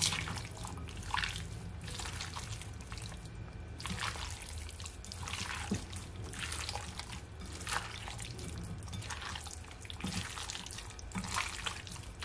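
Wet squelching and squishing of a hand kneading raw chicken thighs in oil, seasoning and chopped herbs in a glass bowl, in many short irregular squishes.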